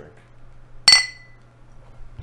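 Drinking glasses clinked together once in a toast: a single bright glassy ring about a second in that dies away within half a second.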